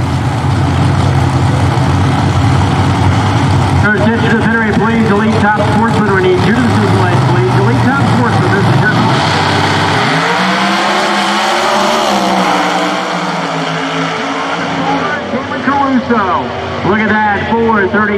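Two Pro Outlaw 632 drag cars' big-block V8 engines holding at the starting line with a steady low drone, then launching about nine seconds in and rising in pitch as they pull away down the track, fading somewhat after a few seconds.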